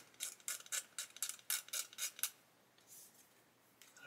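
A fine metal hobby tool scraping a raised moulding edge off a plastic model-kit fuselage half: a quick run of short scrapes, about six a second, that stops a little over two seconds in.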